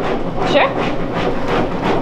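A steady, loud drone of kitchen equipment runs under a brief spoken reply.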